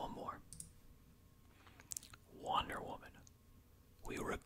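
A few sharp clicks from a computer mouse, about half a second in and again near two seconds, between soft whispered sounds.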